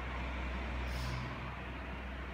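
Steady background noise: a constant low hum under a hiss, with a brief higher hiss about a second in.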